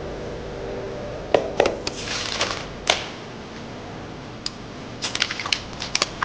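A sheet of paper being written on and handled. A few sharp taps and clicks come first, then a brief scratchy rustle about two seconds in, and a quick run of small clicks and paper rustles near the end.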